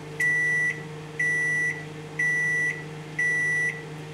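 Samsung microwave oven beeping four times at the end of its cooking cycle, each beep about half a second long and one a second, over a low steady hum.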